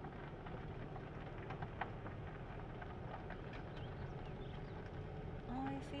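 Car rolling slowly over a dirt and gravel road, heard from inside the cabin: a steady low rumble with scattered small ticks of grit and pebbles under the tyres.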